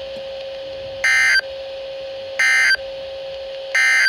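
Three short, harsh, modem-like bursts of NOAA Weather Radio SAME digital header data, about a second and a half apart, played through a Midland weather radio's speaker. This coded header marks the start of a new warning message. A faint steady tone lies underneath.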